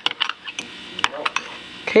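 Metal spoon clinking against a glass as a drink is stirred: a handful of sharp, irregular clinks.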